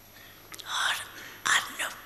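Speech: a voice speaking three short phrases, starting about half a second in, that the recogniser did not write down.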